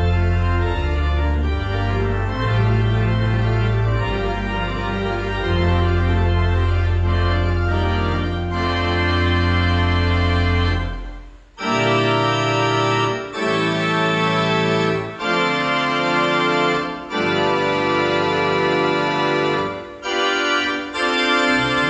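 Church pipe organ playing sustained chords over deep pedal bass notes. About halfway through it stops briefly, then goes on with a series of separate held chords about two seconds each, without the deep bass.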